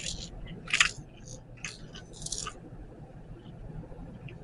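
A few short clicks and crinkles from small plastic parts being handled as a syrup dispenser pump is fitted together. The sharpest click comes about a second in.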